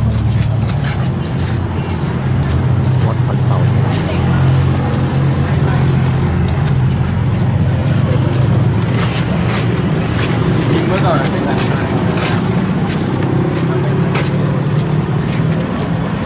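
Street traffic with a steady low engine hum close by, mixed with people's voices and scattered clicks.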